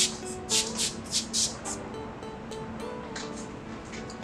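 Short squirts of water from a hose-fed trigger spray wand, about half a dozen in quick succession in the first second and a half, then a few fainter ones. They wet the film's adhesive side to keep it moist so it does not stick prematurely. Background music plays underneath.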